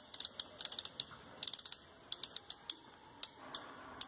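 Volume-setting knob of a Labtex 10–100 µl adjustable micropipette being turned, its detent ratchet giving runs of small quick clicks as the volume is set to 50 µl.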